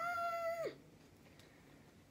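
A woman's hummed, high 'mmm' of enjoyment while tasting food, rising in pitch and then held, ending under a second in.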